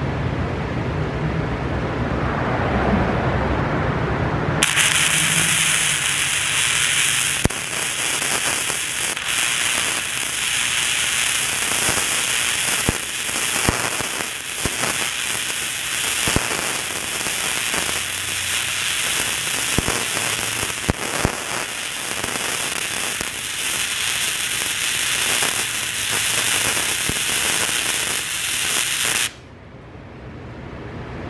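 Flux-core wire welding arc from a Harbor Freight Titanium Easy Flux 125, laying a forward-and-back weave bead on cleaned steel. A loud, steady crackling sizzle with sharp pops starts about four and a half seconds in and cuts off abruptly just before the end.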